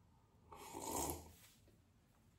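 A slurped sip from a mug: one noisy drawn-in breath about half a second in, lasting just under a second.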